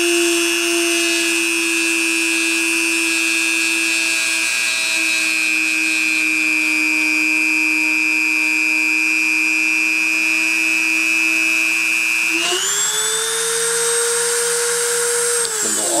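Dremel rotary tool spindle running at about 30,000 RPM, a steady whine while it pushes a spinning copper wire against a ceramic plate in friction surfacing. About twelve seconds in, the whine jumps up in pitch as the wire lifts off the surface and the motor unloads. Near the end the pitch falls as it spins down.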